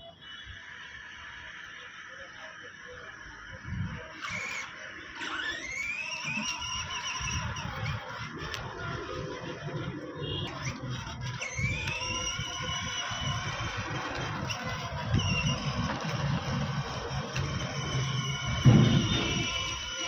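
Electronic music-like tones with two rising pitch sweeps, like revving sound effects, over a low rumble that grows louder in the second half, with a loud thump near the end.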